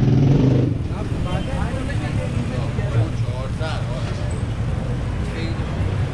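A motorbike engine running in a narrow lane, a steady low drone that is loudest for the first moment, with people talking in the background.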